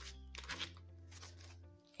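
Quiet background music of held chords, changing about half a second in. Over it comes a faint crinkle of paper bills being pulled from an envelope and handled.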